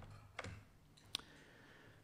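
Near silence with two faint, sharp clicks less than a second apart.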